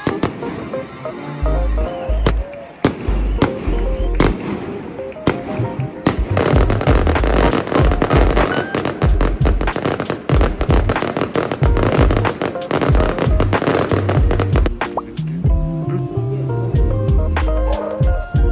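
Fireworks going off: a few separate bangs in the first seconds, then a dense run of rapid crackling bangs from about six to fifteen seconds in, over background music.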